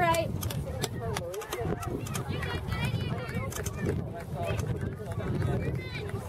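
Indistinct calling voices of players and spectators at an outdoor youth soccer game, over a steady low rumble.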